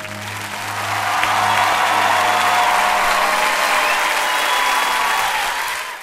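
Live audience applause after the song has ended, swelling over the first second into a steady ovation. Beneath it the band's final low chord dies away, and the applause cuts off suddenly at the very end.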